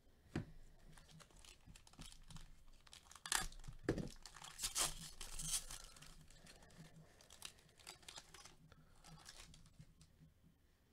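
A trading-card pack wrapper being torn open and crinkled by gloved hands, with a run of crackling rustles that is loudest in the middle few seconds.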